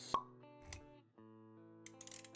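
Intro music with held notes, with a sharp pop about a tenth of a second in, the loudest sound, then a soft low thump. These are the sound effects of an animated logo intro. The music drops away for a moment just past the middle, then comes back.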